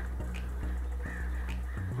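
A bird calls about a second in, over a steady low hum.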